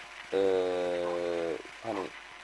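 Speech only: a man's voice holding one long, level hesitation sound 'eee' for over a second, then a short word near the end.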